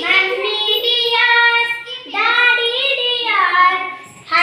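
A child singing an action rhyme in two phrases, the second ending on a falling, drawn-out note.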